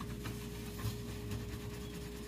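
A damp cloth wiping a wet gas stove top in faint, short rubbing strokes, over a steady low hum.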